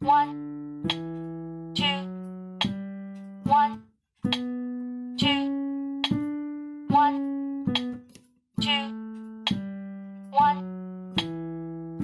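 Piano playing a one-octave D major scale with the left hand at a slow, even tempo of about one note a second, each note held until the next: it steps up to the top D and back down, with two brief gaps.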